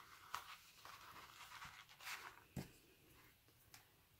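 Near silence, with a few faint soft ticks and rustles from hands handling elastic cord on a craft-foam notebook cover.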